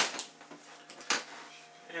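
Brief clicks and knocks of food packages being handled and set down, a sharp one at the start and a smaller one about a second in, over a faint steady appliance hum.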